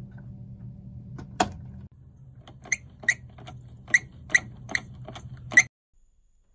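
Plastic clicks from the red cap of a Fluidmaster 400 toilet fill valve being handled and twisted back onto the valve body. There is one loud click about one and a half seconds in, then a run of sharp clicks about two or three a second from about two and a half seconds in, over a low steady hum.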